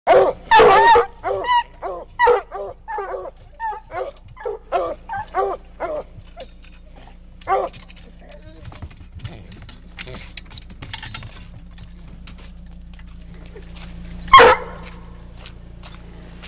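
Dogs in a metal dog box barking in quick succession for about seven seconds, then one more loud bark near the end.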